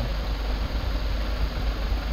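Steady low hum with an even hiss of background noise, with no distinct events.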